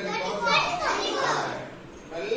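Children's voices: several pupils speaking together, calling out in class.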